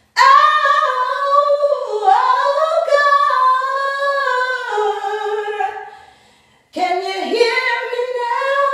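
A woman singing an improvised prayer song unaccompanied in a bathroom: one long phrase gliding between notes, a short break, then a new phrase starts near the end.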